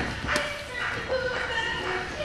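Boxing gloves striking, with two sharp hits near the start, over background voices in the gym.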